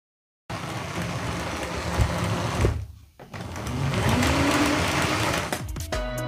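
LEGO 4561 Railway Express 9V train running around its track, a steady whirring of the electric motor and wheels on the rails that dips out briefly about halfway through.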